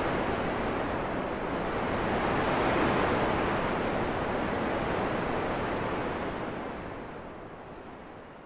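Steady wash of ocean surf breaking on a beach, swelling slightly and then fading out near the end.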